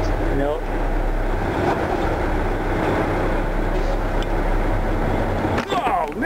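Truck engine and road noise heard inside the cab while driving, a steady rumble.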